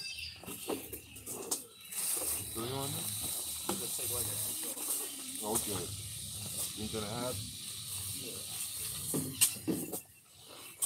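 A steady hiss that sets in about two seconds in and stops near the end, with faint, indistinct voices underneath.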